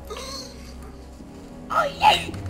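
A short, loud cry with a falling pitch near the end, over a low steady background hum.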